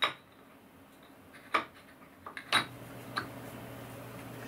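A machined metal end plate being fitted by hand over a lathe spindle end against the headstock casting: four sharp metallic clinks, the first three about a second apart and a smaller one just after. A low steady hum sets in about halfway through.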